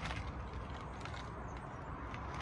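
Quiet, steady low background rumble with no distinct event, and a faint click about a second in.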